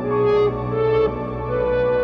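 Instrumental music from an electric guitar and a Yamaha MODX synthesizer keyboard, playing sustained, smooth, horn-like notes that change pitch about every half second.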